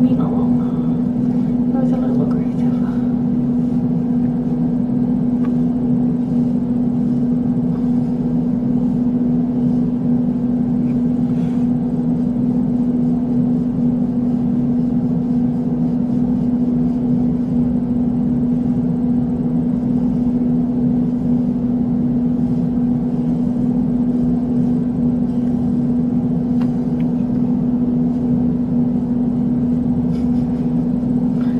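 A steady mechanical hum on one constant low tone, unchanging in level. A few faint higher wavering sounds come in the first couple of seconds.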